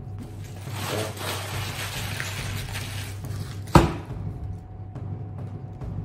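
Background music under paper food wrappers rustling and crinkling for about three seconds, then a single sharp thump about four seconds in.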